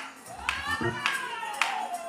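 Sharp hand claps about every half second, under a voice holding a long note that rises and then falls.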